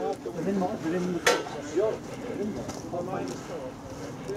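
Faint voices of people talking in the background, with a single sharp click about a second in.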